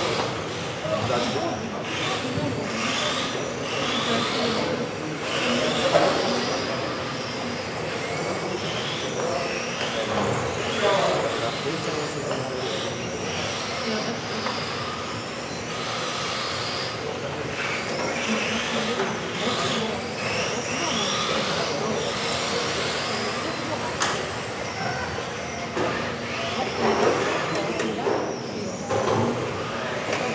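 Several electric radio-controlled touring cars racing, their motors whining up and down in pitch, overlapping, as they accelerate and brake around the track, with the echo of a sports hall.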